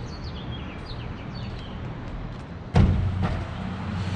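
Small birds chirping over a steady low hum of outdoor city background noise. About three-quarters of the way through comes a sudden loud thump, followed by a lighter knock. After that the background noise is louder.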